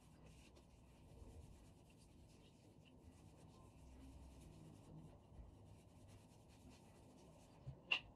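Faint rubbing of fingers working a leave-in cream through wet curly hair, with a sharp click just before the end.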